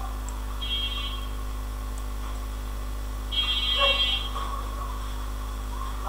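A high buzzing electronic tone sounds twice, briefly about half a second in and again, longer and louder, a little past the three-second mark, over a steady low electrical hum.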